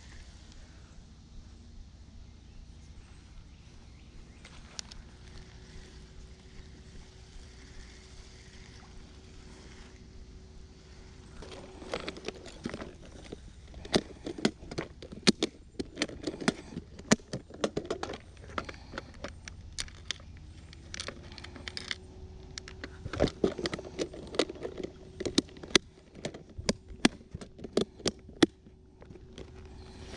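Clear plastic tackle box being handled: a long run of sharp plastic clicks, knocks and rattles of lures and latches, beginning about a third of the way in and going on in clusters until near the end. Before that only a quiet outdoor background with a faint steady hum.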